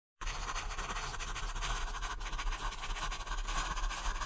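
Crayon scribbling fast on paper: a dense, rapid scratching of many short strokes that starts a moment in.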